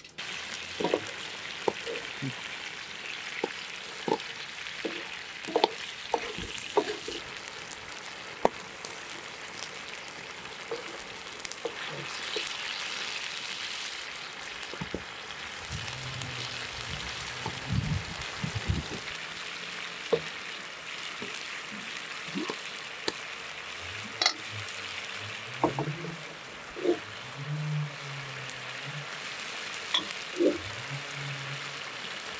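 A wide pan of chilli con carne sizzling and bubbling over an open fire: a steady hiss with frequent small pops.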